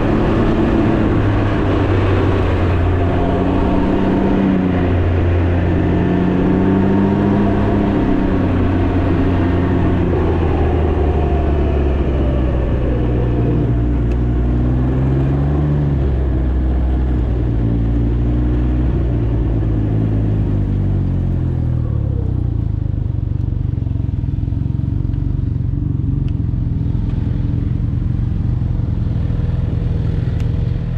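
Can-Am Ryker 900's three-cylinder engine running as the trike slows from road speed, its pitch falling and rising with the throttle, under a rush of wind that fades as it slows. From about two-thirds of the way through it settles to a steady idle.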